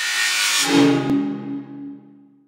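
A short musical intro sting: a swell of hissing noise, then a low chord that rings and fades away within about two seconds.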